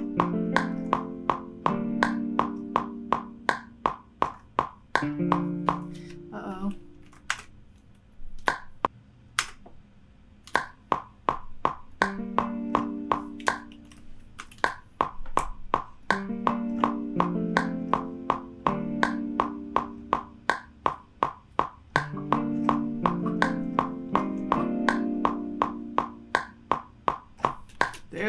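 Logic Pro X's metronome clicks steadily at 164 beats a minute. Over it, a sampled guitar ensemble from Spitfire Audio's free plugin plays short phrases of plucked notes, with gaps of a second or two between phrases.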